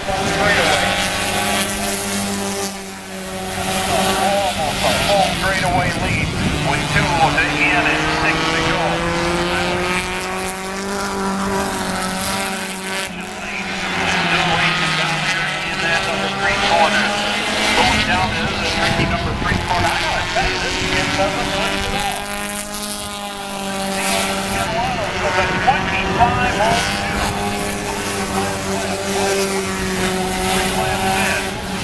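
Four-cylinder race car engines running steadily at low speed under a caution, one climbing in pitch as it speeds up about six to twelve seconds in. Spectators' chatter mixes in.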